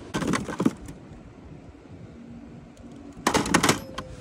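Two short bursts of rapid clicking and clatter, one just after the start and one near the end, with a quieter background between.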